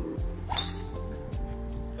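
Background music with a steady beat, and a single sharp crack about half a second in: a driver striking a golf ball off the tee.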